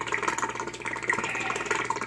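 Air from aquarium air stones bubbling and splashing at the surface of a partly drained fish tank, over the steady low hum of the fish room's air pump.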